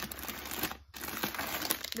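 Clear plastic bags of popcorn crinkling and rustling as they are handled and swapped, with a brief lull just under a second in.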